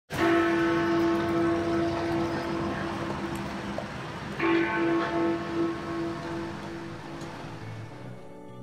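Big Ben, the great clock bell of the Palace of Westminster, striking twice about four seconds apart. Each stroke rings on with a pulsing hum and fades slowly.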